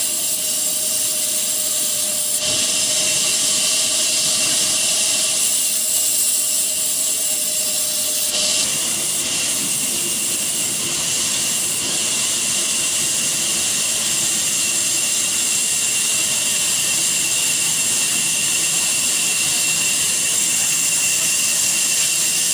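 Sawmill band saw and its old stationary flywheel engine running, a loud, steady mechanical noise with a strong high hiss. A steady tone from the saw fades out about eight seconds in.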